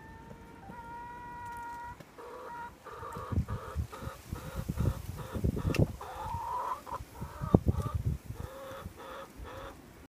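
Hens calling in the coop doorway: one long, drawn-out note, then a run of short, repeated clucks. Low knocks sound under the clucking, the loudest a sharp one near the end.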